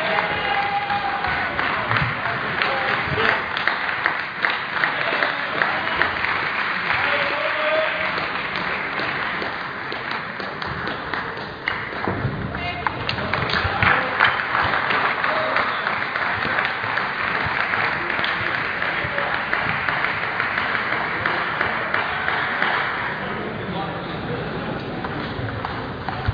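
Din of a busy indoor table tennis hall: many voices and clapping throughout, with many short sharp clicks.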